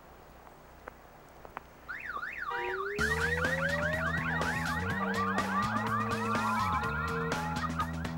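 A car alarm's warbling siren starts about two seconds in, its pitch sweeping quickly up and down, and a music track with a steady bass line comes in a second later, the alarm's rapid chirps carrying on over the music.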